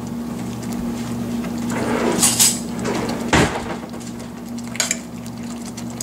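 A metal spoon scraping and clinking against a stainless steel pan of thick tomato gravy as a spoonful is scooped out to taste. There are a few short scrapes and clinks, about two, three and a half and five seconds in, over a steady low hum.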